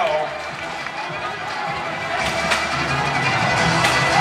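Competition-arena ambience: music over the public-address system mixed with crowd noise, with a few sharp knocks in the second half.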